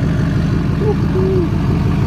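Chevrolet Silverado 2500HD pickup's V8 engine idling through its large single exhaust pipe, a steady, evenly pulsing low rumble.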